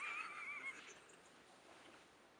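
A dog whining: one short, high-pitched whine that wavers up and down, lasting under a second at the very start.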